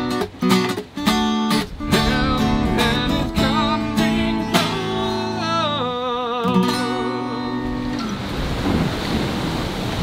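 Acoustic guitar strummed by hand, then chords left to ring while a voice sings a wavering melody over them. The playing stops about eight seconds in, leaving a steady rush of wind and sea.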